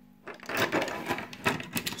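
Several fountain pens gathered up by hand off a desk, knocking and rattling against each other in a dense run of clicks and scrapes that starts about a quarter second in.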